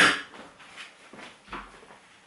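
Faint handling noises on a worktop: a sharp knock at the very start that fades quickly, then a few soft clicks and a brief low thud about one and a half seconds in.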